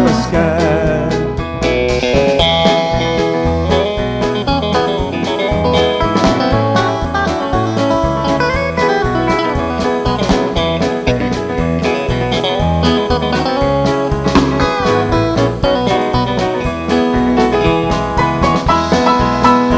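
A live band playing an instrumental break of a country-gospel song: electric guitar leading over electric bass, keyboard and a drum kit keeping a steady beat.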